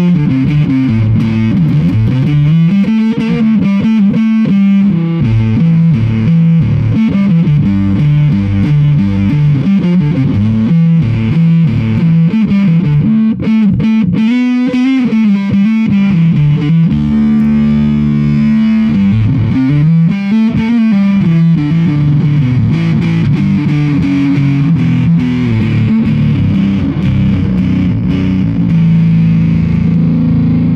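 Low, fuzzy riffing on an electric stringed instrument played through a handmade clone of the Black Sheep / Roland Bee Baa fuzz pedal, with the notes heavily distorted. The notes slide up and down in places, and a few are held for a couple of seconds just past the middle.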